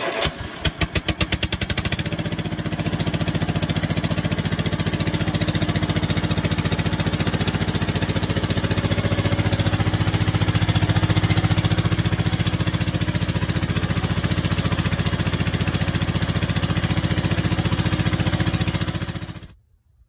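1976 Wisconsin twin-cylinder engine starting: it catches at once, fires unevenly for a couple of seconds, then settles into a steady run. It runs unloaded, with its drive belts off.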